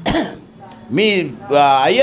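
A man speaking Telugu in short phrases, opening with a brief rough throat-clearing sound.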